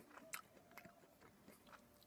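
Faint mouth sounds of biting and chewing a blood orange segment, a few soft clicks in the first second over near silence.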